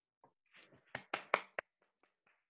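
Brief, light hand clapping: about four sharp claps close together, starting about a second in, after a few softer taps.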